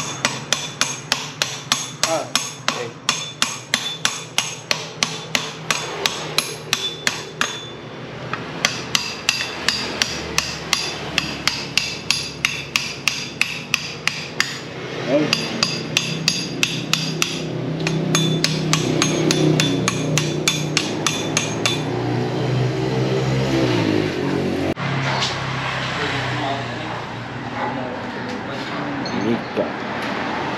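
Hammer striking metal repeatedly, about three to four blows a second with a ringing note, in three runs broken by short pauses. In the second half a low hum swells, then drops in pitch and dies away a few seconds before the end.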